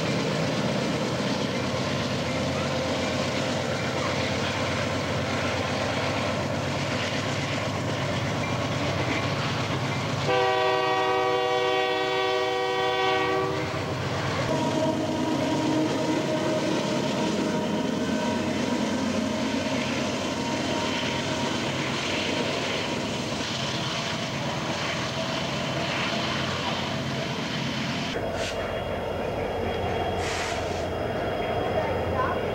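Union Pacific diesel freight locomotives passing close by, with a steady engine drone and the rumble of wheels on rail. About ten seconds in, a locomotive's multi-chime air horn gives one blast of about three seconds. Near the end the sound changes as another train approaches.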